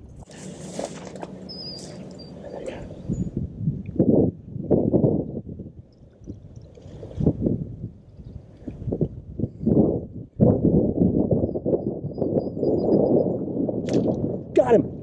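Wind buffeting the camera microphone in irregular gusts, with grass and brush rustling as someone moves along a pond bank. A few faint high chirps sound about a second in and again near the end.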